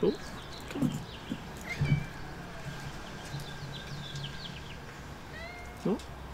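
Balinese kitten meowing a few times in short calls during the first two seconds, with small birds chirping in the background.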